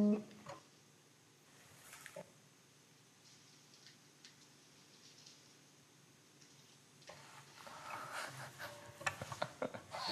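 An acoustic guitar's last note dies away, leaving a quiet room with a few faint clicks. About seven seconds in, soft handling noises pick up: rustling and light taps, with a brief low guitar note near the end.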